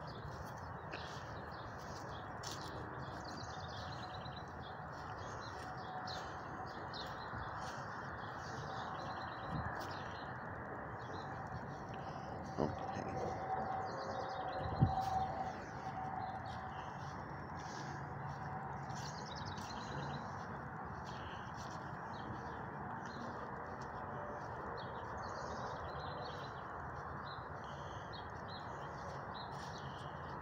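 Birds chirping and singing almost without a break over a steady low background noise, with a single short knock about halfway through.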